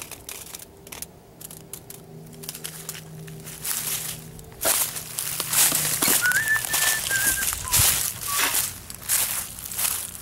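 Dry leaves and brush crackling and crunching underfoot as someone walks through leaf litter, starting about halfway through and continuing irregularly. Before that there is only a faint steady hum. A few short whistle-like chirps sound over the rustling about two-thirds of the way in.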